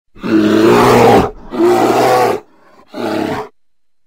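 An animal roaring three times. The first two roars last about a second each, and the third is shorter and ends about three and a half seconds in.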